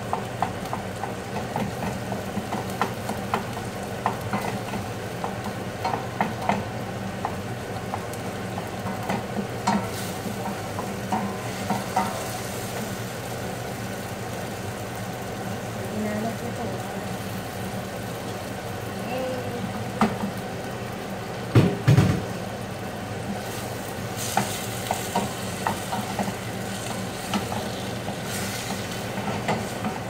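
Pork sizzling in a pot on a gas stove while a utensil stirs it, with scattered small clinks against the pot over a steady low hum. A pair of loud knocks comes about two-thirds of the way through.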